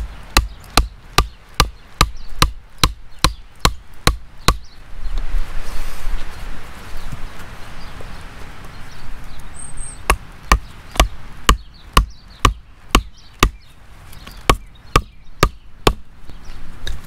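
A hammer driving green wooden legs into holes in a split-log tabletop: a run of steady blows, about two and a half a second, then a pause of a few seconds, then a second run of blows as the next leg goes in.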